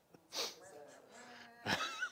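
Short bursts of a person's voice in a small room, about half a second in and again near the end, the second with a short upward glide in pitch.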